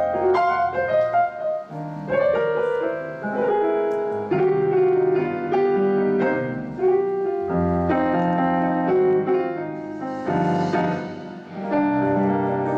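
Solo piano played on a stage keyboard: a slow instrumental introduction of sustained chords and melody notes.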